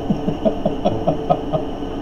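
A man chuckling under his breath: a run of short, quick pulses, about five a second.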